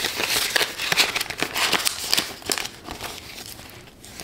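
Plastic Canadian banknotes and a cash envelope rustling and crinkling as bills are handled and slid into the envelope, with small crisp ticks among the rustle. It dies down in the last second or so.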